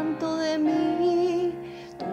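A young woman singing solo in a pop ballad, holding a long vowel with vibrato. The note steps up slightly a couple of times and fades near the end.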